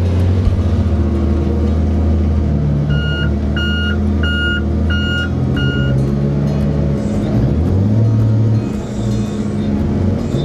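Heavy diesel logging machinery running, heard from inside a machine's cab: a loud, steady engine drone that rises and falls in pitch as the machines work. About three seconds in, a backup alarm sounds five evenly spaced beeps.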